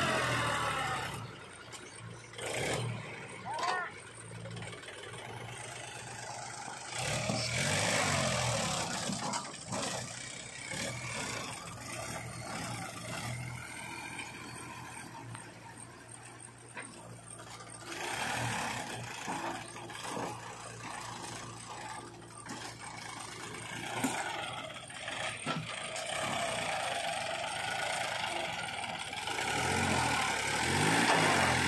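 Diesel engines of a Powertrac 434 DS Plus tractor and a JCB 3DX backhoe loader running in the mud, the engine note rising and falling as they rev under load at times.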